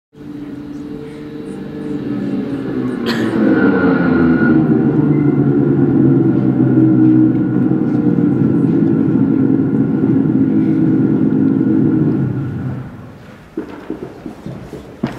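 Snowmobile engine sound effect played over a theatre sound system. It swells in over the first few seconds, runs steadily, then dies away about a second before the end.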